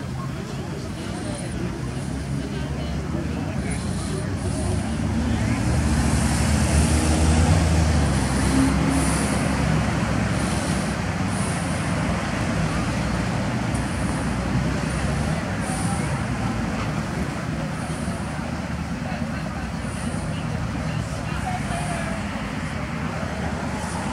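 Road traffic on a street, a steady rumble of passing vehicles; a heavy engine grows louder and peaks about six to nine seconds in before easing off.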